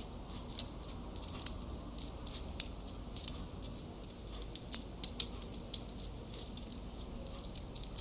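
Close-miked fingers handling a small object, making a dense, irregular run of crisp clicks and crackles, several a second.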